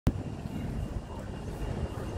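Low, steady rumble of street traffic as a double-decker bus approaches along the road, with a sharp click right at the start.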